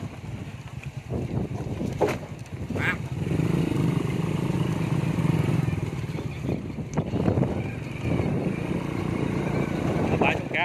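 Small motorbike engine running while riding along a bumpy dirt track, with a few sharp knocks from the bumps.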